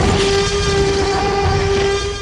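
A single long, loud horn-like tone held steady over a low rumble, the closing sound of a television advertisement's soundtrack.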